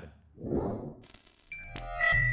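Logo sting sound effect: a short soft rush of noise, then about a second in a bright metallic chime starts suddenly, with several high ringing tones.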